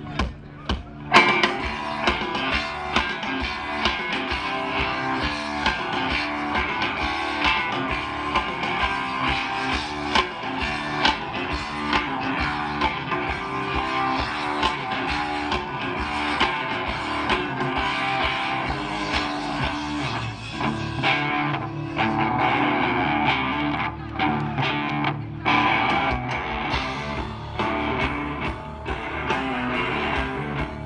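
Live rock band playing, with electric guitars over drums, amplified through a stadium PA. The band comes in with a loud hit about a second in and plays on continuously.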